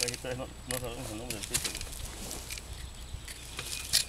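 Faint talking in the background, two short quiet phrases in the first second and a half, with a few light clicks.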